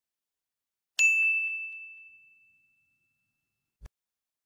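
Notification-bell sound effect: a single high bell ding about a second in that rings on and fades away over about two seconds. A short low thump follows just before the end.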